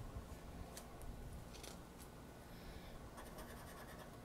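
Faint scratching of a coin on a scratch-off lottery ticket, with a few light clicks as the card is handled; a quick run of scratch strokes starts about three seconds in.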